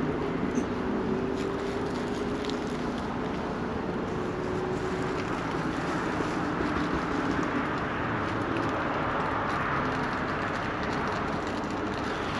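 Steady distant engine rumble with faint droning tones that drift slightly in pitch.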